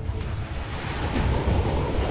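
Rushing whoosh sound effect over a deep bass rumble, with a tone beginning to sweep upward about a second in: the sound design of an animated title logo.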